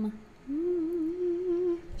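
A woman humming one wavering, drawn-out 'hmm' for about a second and a half.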